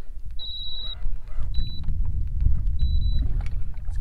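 Low, rumbling wind noise buffeting the microphone, with three short, high, steady beeps about a second apart.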